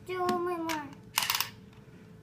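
A short falling "oh" from a voice with a click under it, then a brief whir from a battery-powered Design & Drill toy drill a little over a second in, lasting about a third of a second.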